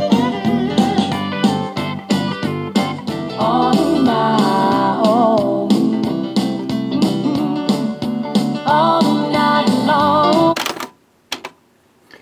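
A 1990s country song with guitar and vocals playing from CD through the Sony CMT-NEZ30 micro stereo's speakers. About eleven seconds in, the music cuts off suddenly because the cassette has reached the end of its tape during CD-synchro recording, and a click follows.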